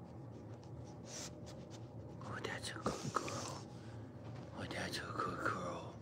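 A person whispering softly to a dog in two short phrases, about two and five seconds in, over the light rustle of hands rubbing its fur.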